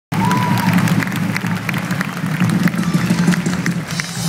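Large arena audience applauding and cheering between songs, a dense patter of claps, with a low steady tone from the stage underneath.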